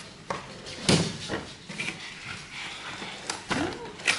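Cardboard packaging being handled: flaps and inserts of a box rustling and knocking, with the sharpest knock about a second in.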